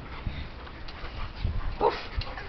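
Dogs at play: faint scuffling and dog noises with a few soft low thumps, and no loud bark.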